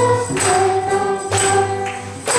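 Children and a woman singing a song together to acoustic guitar, holding each note for about a second. A tambourine strikes about once a second on the beat.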